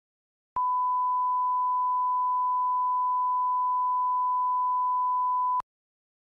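Line-up reference tone played with colour bars: one steady, pure beep lasting about five seconds. It starts and stops abruptly with a click at each end.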